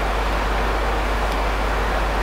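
Steady background hiss with a low, constant hum: the room tone and noise floor of the lecture recording, with no other event.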